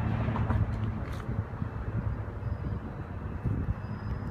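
Low, uneven outdoor rumble, mostly deep bass, with no clear single event.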